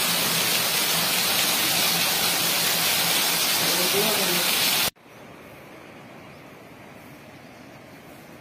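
Heavy rain pouring down as a dense, steady hiss, with a faint voice about four seconds in. The downpour cuts off abruptly about five seconds in, leaving a much quieter steady noise.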